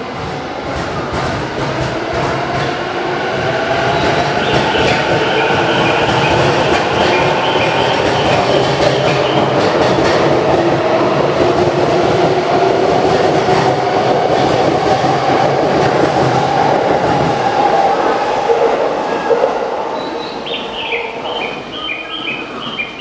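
JR East E233-1000 series electric train pulling out of the platform and accelerating past. Its traction motors give a whine that rises in pitch over the rumble of the wheels on the rails. The sound builds over the first few seconds, holds loud, and fades near the end as the last cars pass.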